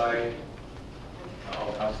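A man's voice over a meeting-room microphone says one word, then pauses for about a second, leaving only low room noise, before speaking again near the end.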